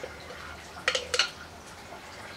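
Metal spoon clinking twice against the blender jar or pan, about a second in, as thick blended bean-and-tomato sauce is scooped into a frying pan of sausages and beans, over a steady low hum.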